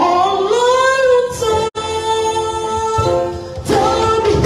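A woman singing a gospel song into a microphone, holding long drawn-out notes. The sound cuts out for an instant about halfway through.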